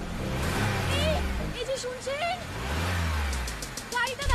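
Car engine and city traffic. A brief voice-like sound comes about a second in, and an engine rises and falls in pitch near the end, as in a rev or a passing vehicle.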